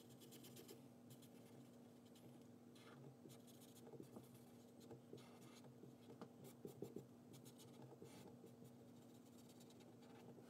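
Faint scratching of a felt-tip marker on paper in short repeated strokes as an area is colored in, over a steady low hum.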